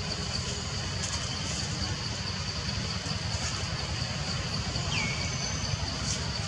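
Steady outdoor background with a constant low rumble and a steady high-pitched drone. About five seconds in, a short call drops in pitch and then holds briefly.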